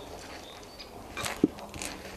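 Quiet outdoor background with a brief rustle and one sharp click about one and a half seconds in.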